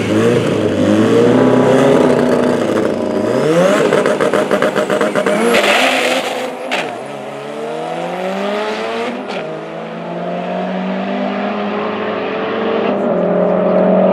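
Two drag-racing cars, a Nissan 1400 Champ bakkie and an Audi hatchback, launching side by side at full throttle, their engines climbing in pitch and dropping back at several gear changes as they accelerate away down the strip. The sound eases off in the second half as the cars pull away.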